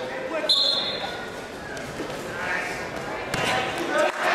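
Referee's whistle, a short high blast about half a second in, starting the wrestling bout. Spectators' shouts follow in the echoing gym, with thuds on the mat near the end as a wrestler shoots for a takedown.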